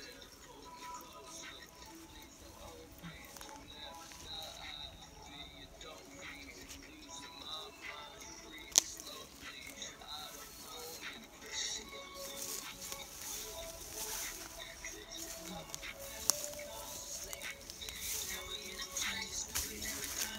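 A rap track playing faintly, with a rapping voice over it. Two sharp clicks stand out, about nine and sixteen seconds in.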